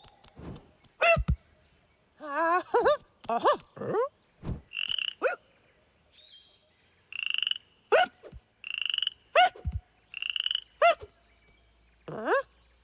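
Cartoon frog croaking in short pulsing croaks, four of them in the second half, between short wordless squeaks and calls from cartoon animal characters, several sliding quickly down in pitch.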